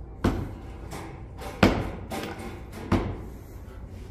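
Heavy thumps, three of them about a second and a half apart, each sharp and loud with a short ring after it.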